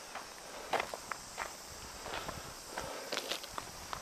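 Footsteps of a person walking over gravel and grass: irregular crunching steps, the loudest about three-quarters of a second in.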